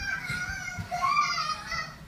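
A young girl's high-pitched excited squeal, drawn out for nearly two seconds with its pitch wavering.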